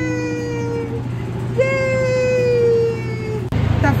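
People giving long, slowly falling 'woooo' calls, two voices overlapping at first, then a single call from about one and a half seconds in, over the steady low hum of the moving zoo train. The sound cuts abruptly about three and a half seconds in to noisier train rumble.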